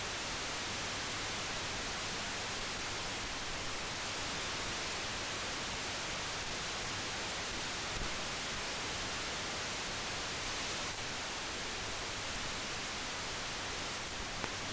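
Steady hiss with no other sound: the noise floor of a mute film transfer.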